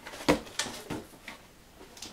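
Cardboard boxes being handled and moved, giving a few short knocks and scrapes, the loudest about a third of a second in.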